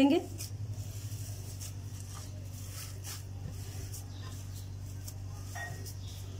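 Hands squeezing and working a soft, moist mash of boiled rice, potato and chopped vegetables in a glass bowl: faint, irregular squishing and rustling over a steady low hum.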